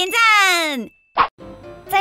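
Children's-channel intro sound: a loud voice call sliding down in pitch, then a short cartoon pop sound effect about a second in, followed by light children's music.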